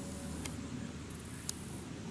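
Quiet, steady background hiss with two faint ticks, one about half a second in and one about a second and a half in.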